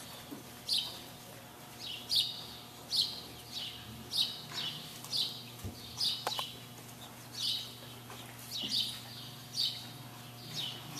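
A small bird chirping over and over, a short high falling chirp about once a second, over a faint steady hum.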